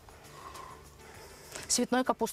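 A short pause with only faint background hiss, then a person starts speaking near the end.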